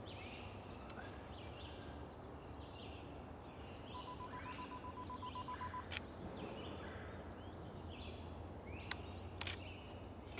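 Camera self-timer beeping quickly at one pitch for about two seconds, then a sharp shutter click. Birds chirp faintly and repeatedly throughout, and a couple more clicks come near the end.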